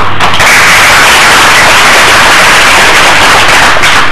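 Audience applauding loudly, dying away just before the end.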